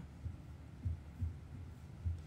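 A pause in talk: quiet room tone with a few faint, low thuds.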